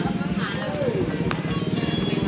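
Open-air market ambience: background voices and music over a steady, rapid low pulsing.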